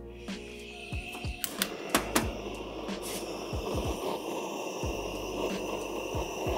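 Handheld butane torch clicked alight about a second and a half in, then hissing steadily as its flame is played on apple wood chips to start them smoking.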